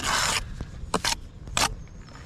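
Steel brick trowel scraping along a freshly laid engineering brick course, cutting off the excess mortar squeezed out of the bed joint, followed by two short sharp clicks.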